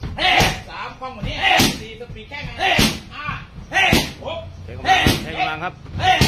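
Muay Thai kicks landing on leather Thai pads, five sharp strikes about a second apart, each followed by a short vocal cry.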